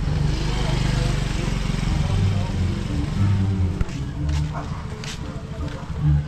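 People talking and chatting nearby, with a vehicle engine running in the background and a rushing noise in the first half.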